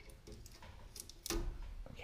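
Faint small clicks and rustles of gloved hands handling electrical cable at a can light's junction box, just after the cable's outer sheathing has been stripped off.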